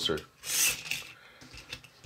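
Miniature pull-back toy car let go on a plastic track, its tiny wheels giving a short hissing rasp about half a second in. The wheels are spinning out for lack of grip, which the owner puts down to powder on them.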